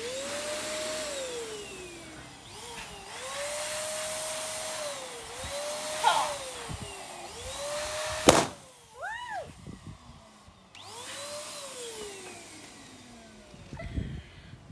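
Electric balloon pump's motor whining in several spurts, its pitch rising as it starts and falling as it stops, as it inflates a latex balloon. The balloon bursts with a sharp bang about eight seconds in; after a short pause the pump runs again.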